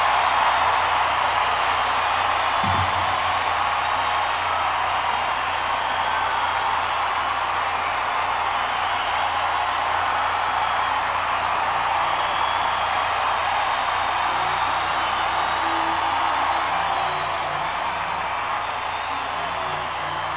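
A concert audience applauding and cheering steadily between songs, with scattered whistles, over a low electrical hum. From about two-thirds of the way in, a few short low instrument notes sound as a guitar is changed and checked.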